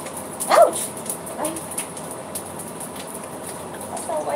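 Oil crackling and popping in a frying pan, with a short cry that falls in pitch about half a second in, the loudest sound, and a second, fainter one near the end.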